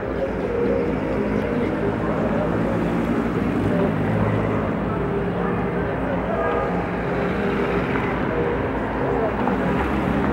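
Busy city street ambience: cars and taxis driving past with the steady chatter of many people on foot. A car passes close near the end.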